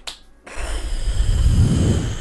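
A short click, then a long, loud exhale blown straight into a close microphone. The breath hits the mic as a rushing noise with a heavy rumble.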